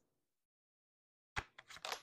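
Silence, then tarot cards being handled on a tabletop about a second and a half in: one sharp click followed by a few quick, faint clicks and rustles as a card is drawn and laid down.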